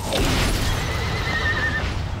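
A horse whinnying, with a high wavering cry in the second half, over a low steady rumble.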